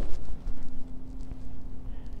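Footsteps on a concrete floor with a low rumble from the phone being handled, over a faint steady hum.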